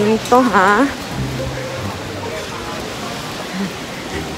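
Rain falling steadily, an even noise with no rhythm. It follows a brief vocal exclamation about half a second in.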